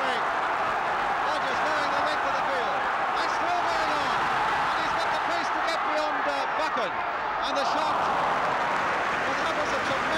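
Football stadium crowd: a steady din of many voices, with individual shouts rising and falling out of it.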